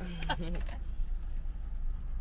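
Steady low rumble of a car's cabin, with a short vocal sound about half a second long at the start and light high clicks and jingles over the top.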